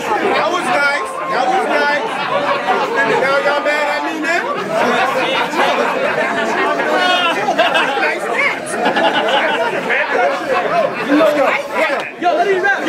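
Crowd of many voices talking and calling out over each other, an audience reacting to a battle-rap punchline.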